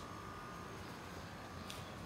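Steady quiet room tone: a low hiss with a faint high steady hum, and a short breath near the end.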